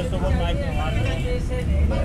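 People's voices talking over a steady low rumble of street noise.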